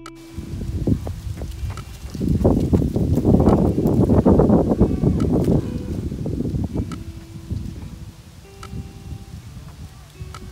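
Gusty wind buffeting the microphone, a low rough rumble that builds about two seconds in, is loudest for the next few seconds, then eases off toward the end.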